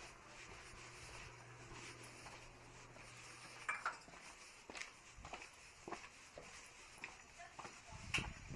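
Quiet footsteps on a concrete alley floor, a sharp step about every half-second to second from about halfway, over a faint low hum that stops about halfway.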